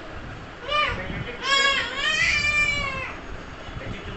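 A young child's high-pitched vocal squeal: a short call just under a second in, then a longer drawn-out one lasting about a second and a half.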